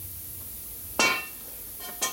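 A sharp metal clank with a brief ringing decay about a second in, then a lighter clink near the end: steel parts of the blaster's rotary table knocking together as they are handled.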